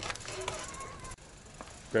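Faint voices of a group of riders with a few light clicks and knocks, growing quieter after about a second.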